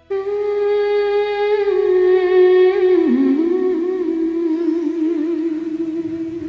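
A woman humming one long sustained note with closed lips, steady at first, then dipping in pitch about three seconds in and wavering after that.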